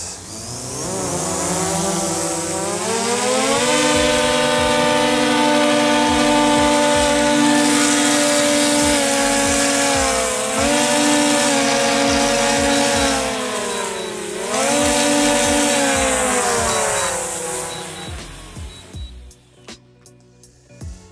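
DJI Mavic 2 Pro quadcopter's motors and propellers whining at full power as it strains to lift a 1.25 kg water jug on a rope and cannot raise it off the ground: the drone is overloaded. The whine rises in pitch over the first few seconds, holds high with two brief dips, and falls away near the end as the drone comes down.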